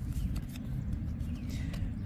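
Baseball cards being slid through a hand-held stack, a few faint light card-stock ticks over a steady low background rumble.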